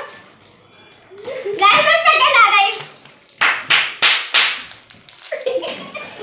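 Girls talking excitedly, then about halfway through four quick hand claps in a row, followed by more chatter.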